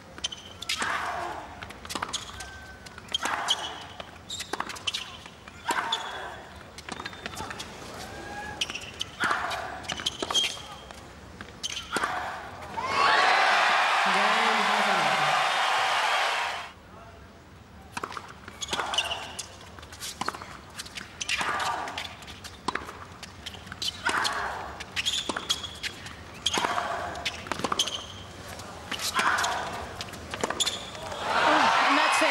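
Tennis rallies on a hard court: rackets striking the ball and the ball bouncing, a run of sharp pops throughout. About thirteen seconds in comes a burst of crowd applause lasting about four seconds, the loudest sound here, which cuts off suddenly.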